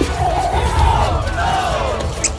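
A group of voices yelling together like a battle cry, wavering and rising in pitch, over music with a heavy low beat.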